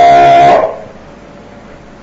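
A voice singing a long held note that ends about half a second in, followed by a steady low hiss.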